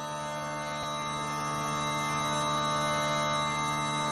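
Bagpipe drones holding a steady chord that slowly swells in level, the opening of intro music.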